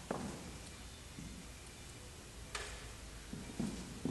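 A few faint, short clicks and light knocks over quiet room tone, the clearest about two and a half seconds in: handling noise from recording gear (a microphone stand and a small audio box) being touched and adjusted.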